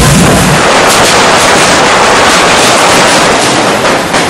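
Hand-held correfoc fire fountains (carretilles) spraying sparks with a very loud, continuous rushing hiss and crackle.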